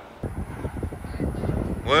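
Gusty wind ahead of an approaching storm buffeting a phone's microphone: an irregular low rumble with uneven thumps that starts suddenly a moment in. A man's voice says "Well" near the end.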